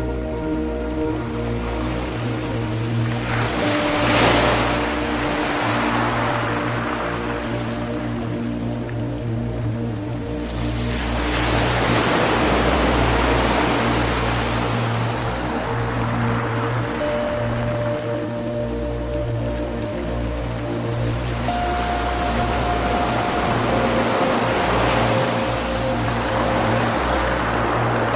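Slow ambient music of long-held soft tones over a low pulsing bass, layered with the wash of ocean surf that swells and fades a few times.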